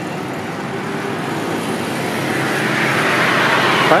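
Road traffic noise from a highway, with a passing vehicle growing steadily louder over the last two seconds.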